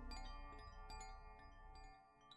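Faint, fading music of bell-like chimes struck at irregular moments on many different pitches, each note ringing on, over a low drone that dies away near the end.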